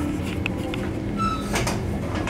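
A door being moved, with two short scraping or knocking sounds about one and a half seconds in, over a steady low rumble.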